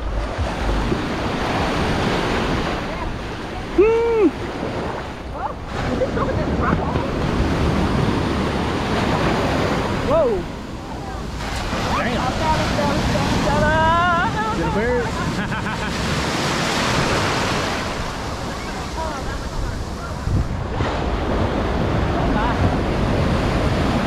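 Rough ocean surf breaking and washing up the sand, swelling and easing every few seconds, with wind buffeting the microphone.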